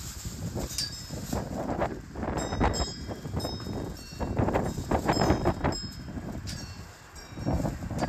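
Wind buffeting the microphone as a flag flaps on a metal flagpole. Several short metallic pings ring out at intervals, the halyard fittings knocking against the pole.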